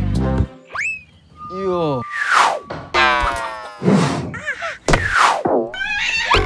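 Background music stops about half a second in, followed by a string of cartoon sound effects: boings and slide-whistle-like swoops, one after another, rising and falling in pitch.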